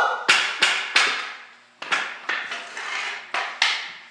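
Floor hockey stick knocking against a plastic ball and the hard floor: a string of sharp clacks about three a second, with a short pause near the middle.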